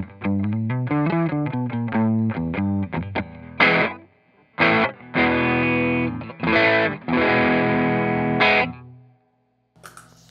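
Fender American Special Telecaster on its bridge pickup played through an overdriven amp: a run of quick picked single notes, then a handful of ringing chord stabs, the last fading out about nine seconds in.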